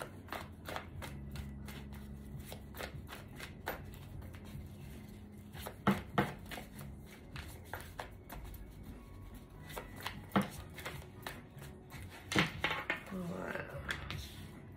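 A tarot deck being shuffled by hand: a steady run of soft card clicks and slides, with a few sharper clicks along the way.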